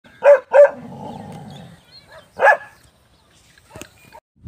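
Dog barking: two quick barks close together, then a single bark about two seconds later.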